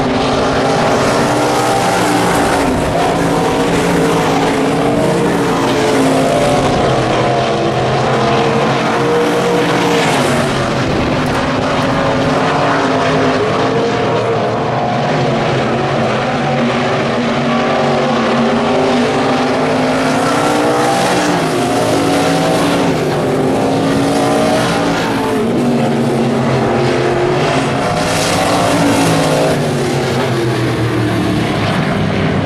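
Several IMCA stock cars' V8 engines racing together on a dirt oval, a loud, continuous mix of engine notes rising and falling as the cars accelerate and back off around the track.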